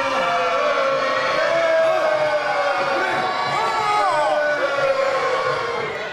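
Voices holding one long drawn-out note that slowly falls in pitch and ends about five and a half seconds in, with a shorter wavering voice rising and falling over it near the middle.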